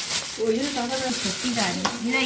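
Clear plastic bag crinkling and rustling as an item is worked out of it, with a person's voice sounding over it from about half a second in.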